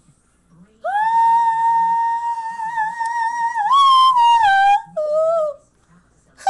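A person singing one long, loud, very high held note for about three seconds, which then lifts briefly and slides down, followed by a shorter, lower note near the end.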